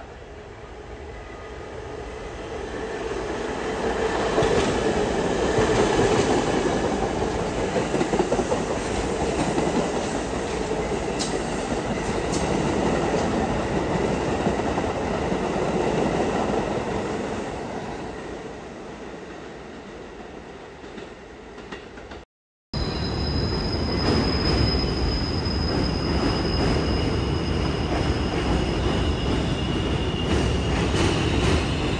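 A New York City subway train runs past: its rumble and wheel noise build up, stay loud for about a dozen seconds, then fade away. After a sudden cut about two-thirds of the way through, another train is heard running steadily, with a high steady whine over the rumble.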